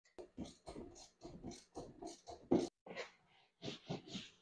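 Cloth wiped briskly back and forth over a golf-cart seat-back cover, a quick run of rubbing strokes about four a second that slows to a few single strokes near the end.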